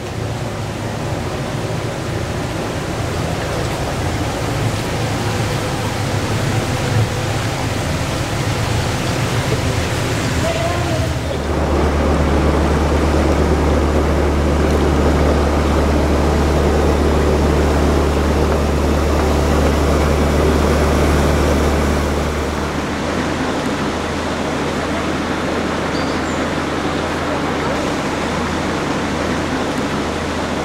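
A narrowboat's engine runs steadily under way, with a constant rushing hiss of water. From about eleven to twenty-two seconds in the sound is deeper and louder: the engine together with the rush of a lock bywash spilling into the canal alongside.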